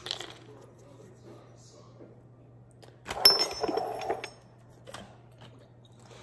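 Glass kitchenware clinking: a sharp clink with a short high ring about three seconds in, followed by about a second of rattling and handling, with a quick run of lighter clicks at the very start.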